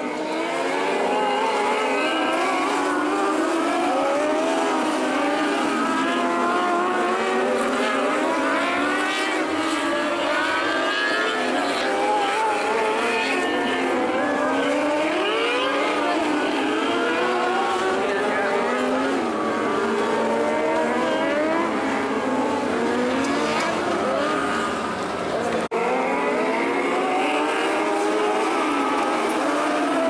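Several 600cc micro sprint cars' high-revving motorcycle engines racing around a dirt oval, their pitches overlapping and rising and falling constantly as they lift and accelerate through the turns.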